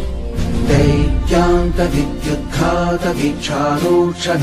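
Devotional music: a voice chanting a Sanskrit mantra in short melodic phrases over a steady low drone.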